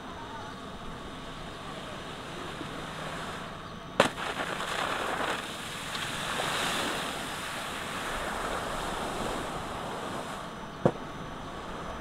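Wakeboard cutting across the water with a steady hiss of spray and wind. The hiss gets louder after a sharp knock about four seconds in, and another short knock comes near the end.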